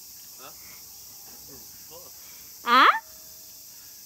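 Steady high-pitched insect chorus, with a few faint voices and one short, loud shout from a person a little under three seconds in.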